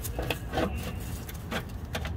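Scattered light metallic clicks and knocks, about half a dozen in two seconds, from the unbolted starter motor being handled and shifted against the surrounding metal. A steady low hum runs underneath.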